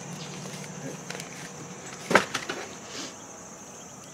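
Quiet outdoor ambience with a steady, high-pitched insect drone throughout, and one sharp click a little after two seconds in, followed by a few faint ticks.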